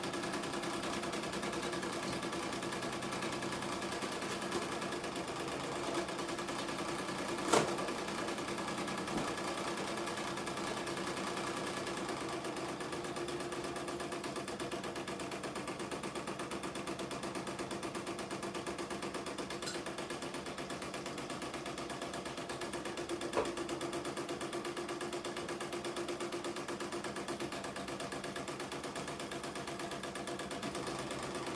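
Computerised embroidery machine stitching steadily: a rapid, even needle rhythm over a steady motor hum. A few sharp clicks come through it, the loudest about a quarter of the way in.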